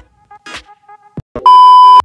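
Electronic music with low kick-drum hits. About a second and a half in it gives way to a very loud, steady electronic beep at one pitch, which lasts half a second and cuts off abruptly.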